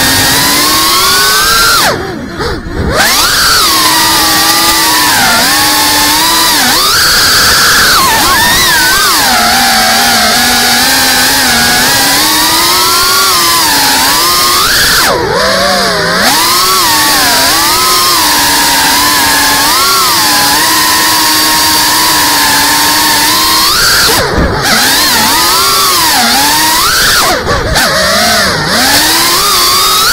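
FPV racing quadcopter's brushless motors whining, recorded from the camera on board, the pitch rising and falling constantly with the throttle. Several brief dips where the motors drop off, the deepest about two seconds in, as the throttle is chopped during manoeuvres.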